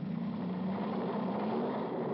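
Car engines running hard in a drag race, heard as a steady drone that rises slightly in pitch.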